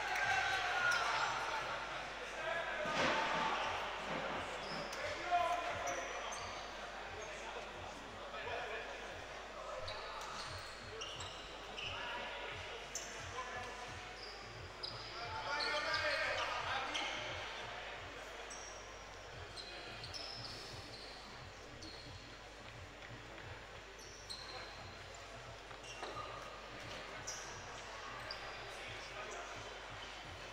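Basketball gym ambience in a large, echoing hall: scattered voices of players and spectators, loudest in the first few seconds and again around sixteen seconds in, with short high sneaker squeaks on the hardwood court.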